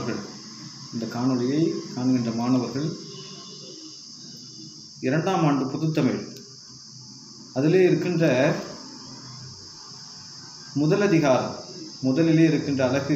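A man speaking Tamil in short phrases separated by pauses of a second or two, over a steady high-pitched hiss that runs underneath throughout.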